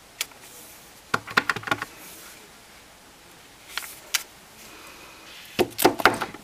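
Clear acrylic stamp block with a photopolymer stamp being handled on a craft table: light scattered clicks and taps against the ink pad and card stock, with a quick run of taps about a second in and a few more near the end.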